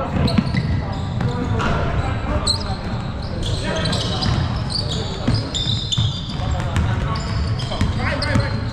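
Basketball being played on a hardwood gym floor: the ball dribbling, many short high sneaker squeaks, and indistinct shouts from the players, all in the echo of a large hall.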